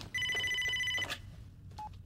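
Mobile phone ringing: one steady electronic ring lasting about a second, followed by a short faint beep near the end.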